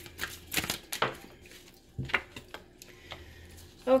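Tarot cards being handled: a scattered run of short, irregular clicks and snaps of card stock as a card is drawn from the deck and laid down on the cloth.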